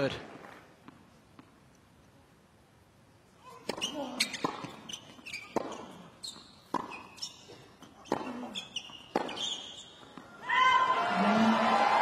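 Tennis rally on a hard court: a string of sharp racket-on-ball hits and ball bounces, roughly one a second. Near the end the point is won and the crowd breaks into loud cheering and applause.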